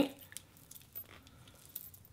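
Near quiet, with a few faint clicks and rustles of handling from a concealer tube and its wand held in the hand.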